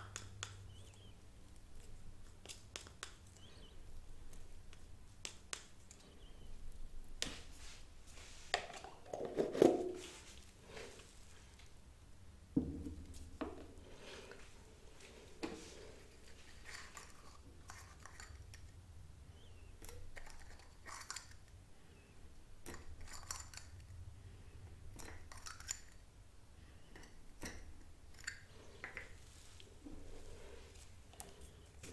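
Close small handling sounds: a wooden stick scraping and tapping in a plastic pot and on a tabletop, and small plastic ink cups clicking as they are handled and set down. Scattered taps and scrapes all through, with a louder cluster about a third of the way in.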